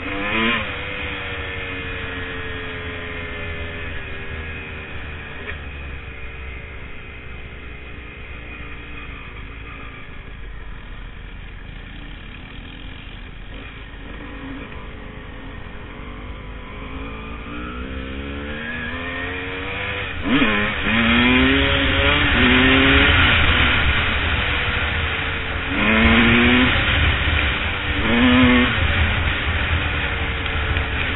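Dirt bike engine heard from on the bike: the revs sink slowly as it rolls off the throttle for the first several seconds, then it accelerates hard, the pitch rising and dropping back several times as it shifts up through the gears in the last third, where it is loudest.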